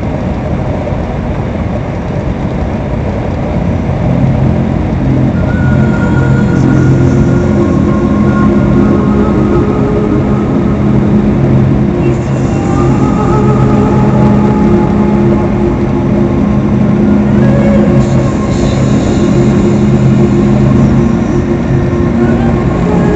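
Steady drone of a truck's engine and road noise inside the cab at highway speed, with the radio playing music underneath.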